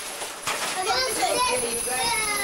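Children's high-pitched voices calling and chattering, starting about half a second in.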